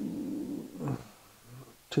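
A man's low, creaky, drawn-out hesitation sound while he searches for a number, fading out about half a second in, with a few faint murmurs after it; he starts speaking again right at the end.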